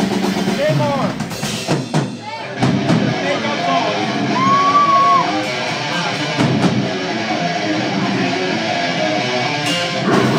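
Deathcore band starting a song live: distorted electric guitars, bass and drums, with a shouted voice over them, the playing becoming steady and full about three seconds in.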